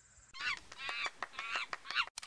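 A series of short, pitched animal calls, several in quick succession.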